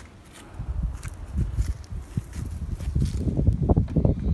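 Wind rumbling on the microphone, growing louder toward the end, with a few soft thuds of footsteps.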